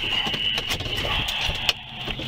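Idling vehicle with a steady high-pitched whine and a few sharp clicks and knocks as the body camera's wearer gets out of the car.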